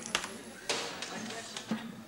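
Low, indistinct voices with a few sharp knocks or clicks, the strongest about two-thirds of a second in.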